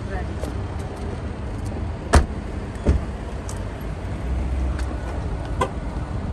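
A car door shuts with a sharp thump about two seconds in, followed by a lighter knock, over a steady low rumble of outdoor traffic noise.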